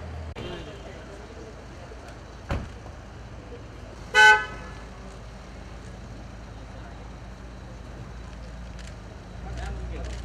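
A car horn sounds one short honk about four seconds in, over steady low traffic and crowd noise. A sharp knock comes a couple of seconds before it.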